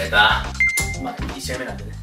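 Background music with a short, bright single-pitched ding about half a second in, like a register chime. A voice is heard briefly at the start.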